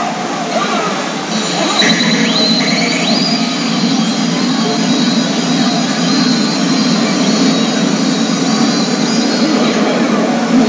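CR Garo FINAL pachinko machine playing its reach-sequence sound effects and soundtrack over a steady, dense pachinko-parlour din, with a few rising tones about two seconds in.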